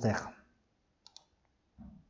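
The last syllable of a spoken word, then two faint, quick clicks close together about a second in, against a quiet room.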